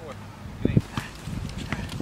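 Basketball bouncing on an outdoor hard court, with sneaker steps: two loud thuds about two-thirds of a second in, then lighter knocks and taps.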